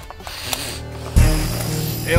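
A soft rustle and a click, then about a second in a sudden deep hit that holds on as a low drone: a dramatic sting in the drama's soundtrack as a fight breaks out.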